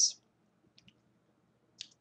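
A pause in a woman's speech: the hiss of her last word trails off at the start, then near silence broken by a few faint, short clicks about a second in and again just before she speaks.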